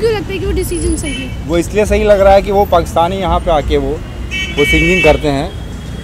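A man speaking over street traffic, with a vehicle horn sounding twice: briefly about a second in, and longer near the end.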